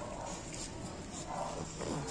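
French bulldog vocalising with a few short sounds, the last one falling in pitch near the end.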